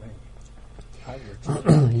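A short pause in a man's speech, with only a faint low hum and traces of voice underneath. A man's voice resumes about one and a half seconds in.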